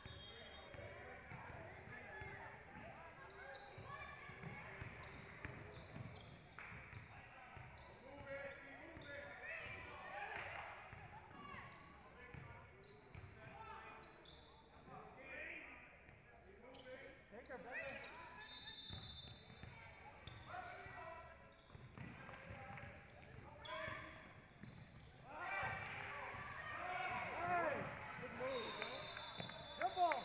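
Basketball bouncing on a hardwood court in a gym, with the voices of players and spectators talking and calling throughout.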